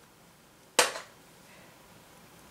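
One sharp click from a pair of steel scissors, a little under a second in.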